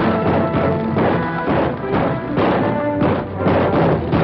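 Busy orchestral film-score music with many held notes over quick, sharp percussive strokes, heard through an old, narrow-band film soundtrack.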